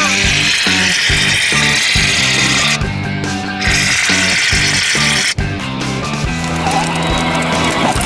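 Background music with a steady beat and a bass line moving in even steps.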